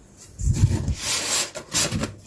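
Polystyrene foam packing insert rubbing and scraping against the cardboard box in uneven strokes as it is worked loose and pulled out, starting about half a second in.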